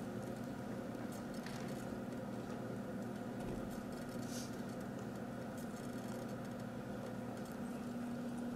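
Faint scratching of a marker writing on paper, over a steady low electrical hum.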